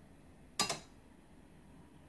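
A single sharp clink with a short ring a little over half a second in: a glass bowl knocking against the rim of a stainless steel stand-mixer bowl as the eggs are poured.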